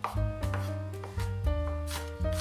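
Chef's knife chopping onion on a wooden cutting board: several sharp knife strikes on the wood, over background music with a steady bass line.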